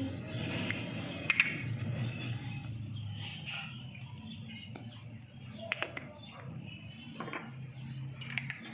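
Metal spoon stirring a thick mayonnaise-and-cream mixture in a glass bowl, with a few light clinks of the spoon against the glass, over a low steady hum.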